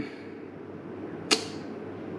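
A pause between spoken words: steady low background hiss, broken once by a single sharp click a little past halfway.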